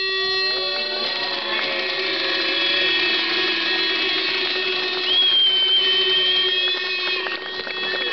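Protest crowd blowing horns and whistles: several sustained tones overlap throughout, with a shrill high whistle held from about five seconds in until near seven seconds.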